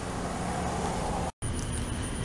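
Steady rush of road traffic with a low hum underneath, swelling a little and then cutting out completely for an instant about two-thirds of the way through.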